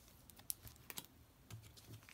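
Faint light clicks and ticks of bagged comic books being handled and flipped through, with several quick ticks in the middle.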